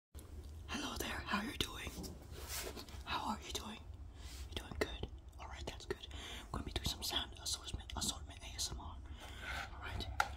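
A person whispering in short phrases, with scattered small clicks between them, over a low steady hum.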